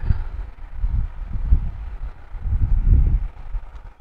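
Wind buffeting the camera's microphone, a low rumble that swells and fades in uneven gusts.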